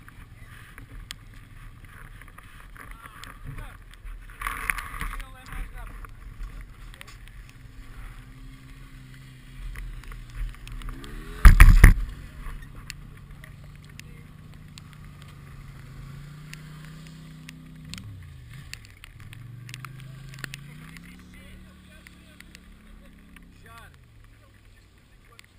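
Quad bike engines idling, with one engine's pitch rising and falling as it is revved in the second half. A single loud thump about halfway through.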